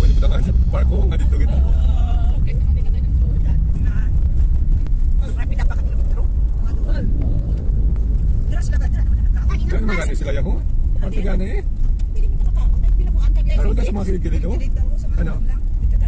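A car driving, heard from inside the cabin: a steady low rumble of engine and tyres on a concrete road, with people talking at times over it.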